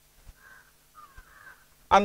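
A crow cawing faintly twice in the background, a short call about half a second in and a longer one about a second in.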